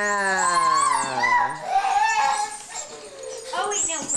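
Large black dog giving one long, low, drawn-out call that slides down in pitch over about two seconds, followed by shorter, higher vocal sounds.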